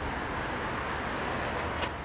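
Steady noise of dense road traffic: many cars and lorries moving along a multi-lane city road.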